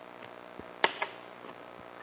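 Two sharp snips close together, a little under a second in: hand wire cutters cutting through the wires inside an X-ray head. A faint steady hum lies under them.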